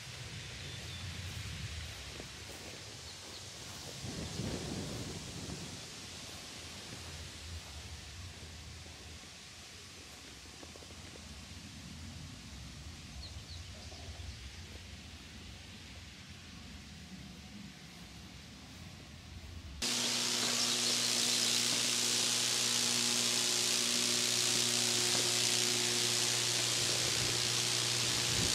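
Quiet outdoor ambience with faint rustling, then about two-thirds of the way through a sudden change to high-voltage transmission lines buzzing overhead: a loud, steady crackling hiss over a low electrical hum, the corona discharge of the energised lines.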